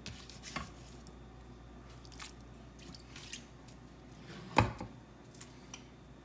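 Quiet kitchen handling noises: a few light clicks and taps, then one sharp knock about four and a half seconds in.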